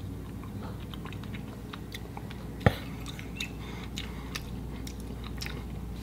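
A man chewing a mouthful of beef stew, with small wet mouth clicks and one sharper click about two and a half seconds in, over a faint steady low hum.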